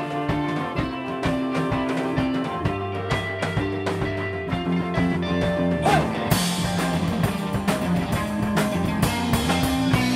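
Indie rock band playing live, an instrumental passage of electric guitars, bass and drum kit. About six seconds in, a guitar note bends and the cymbals come in louder.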